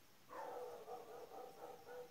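A faint, drawn-out animal call at a fairly steady pitch, starting a moment in and lasting about two seconds.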